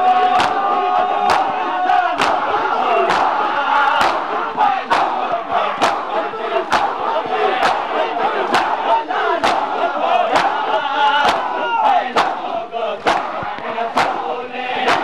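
Large crowd of men performing matam, beating their bare chests with their hands in unison: sharp, regular slaps about once a second over the crowd's loud chanting.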